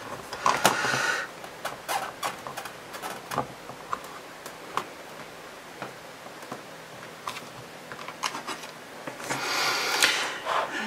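Small scattered clicks and taps of fingers pressing a clear stamp down through the clear plastic lid of a We R Memory Keepers Precision Press stamping tool. Near the end comes a short rustling, scraping stretch as the hinged lid is lifted open.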